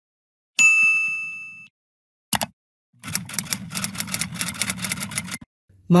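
Intro sound effects for an animated logo: a bright chime rings and fades over about a second, a short knock follows, then a rapid rattling buzz lasts about two and a half seconds and stops.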